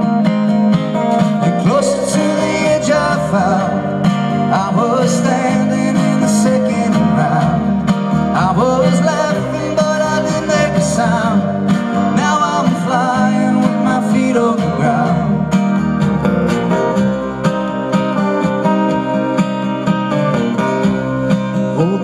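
Live acoustic band music: strummed acoustic guitars, upright double bass and drums, with a melody line over them that slides up and down in pitch through the middle.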